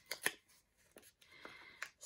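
Faint paper handling as a small kraft-paper envelope is opened by hand, with a few sharp crackles of the paper.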